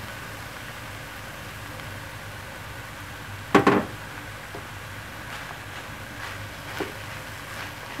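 A low steady hum with one short knock about three and a half seconds in, a wooden spoon knocking against the frying pan, and a fainter tap near the end.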